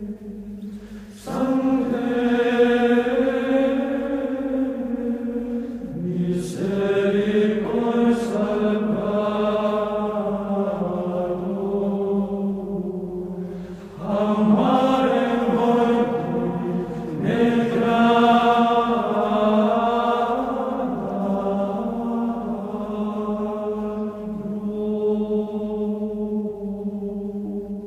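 Background music of a choir singing slow chant in long, held phrases, with new phrases beginning several times.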